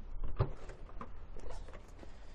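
Hyundai ix35 tailgate latch releasing with one sharp click about half a second in, followed by a few faint ticks as the tailgate lifts, over a low steady rumble.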